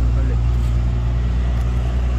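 An engine running steadily with no revving, a low even drone.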